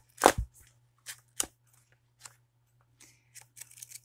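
Pages of a small lined paper notebook being flipped and handled: one loud rustle just after the start, then a few short, softer page flicks.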